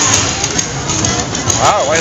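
Loud parade music playing over a street sound system, with crowd noise around it; a person's voice rises and falls briefly about one and a half seconds in.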